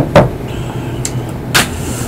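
A ceramic mug set down on a desk: two quick knocks right at the start, then another short click about one and a half seconds in, over a steady low background rumble.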